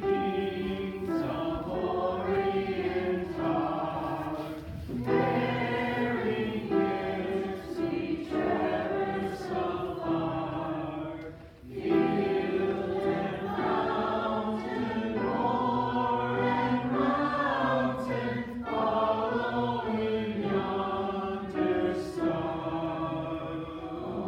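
Church congregation singing a hymn together, with a brief pause between lines about twelve seconds in.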